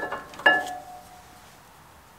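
Two metallic clinks about half a second apart, each ringing briefly, as old brake pads and their shims are worked out of a disc brake caliper.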